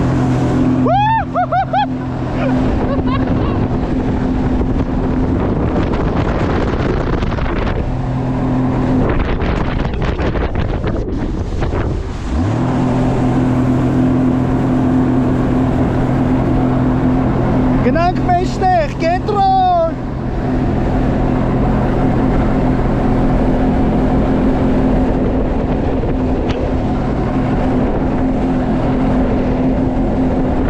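Sea-Doo personal watercraft engine running steadily under way, with wind and water rush on the microphone. The engine note thins out for a few seconds, then rises sharply about twelve seconds in as the throttle is opened again, and runs on steadily.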